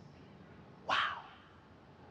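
A single short, breathy exclaimed "wow" about a second in; otherwise faint room tone.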